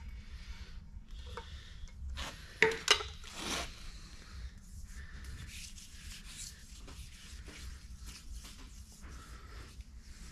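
Thin steel shim strips being handled and rubbed by hand as they are oiled, a quiet, irregular rubbing and sliding. A few sharp clicks and a short scrape come between about two and three and a half seconds in.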